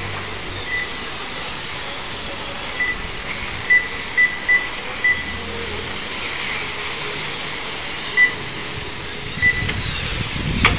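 1/12-scale electric RC pan cars racing, their motors whining high and rising and falling as they pass, over a steady hiss. Short high beeps sound about eight times.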